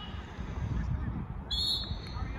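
A referee's whistle blown once, a short sharp blast about a second and a half in, stopping play for a foul. A low rumble runs underneath.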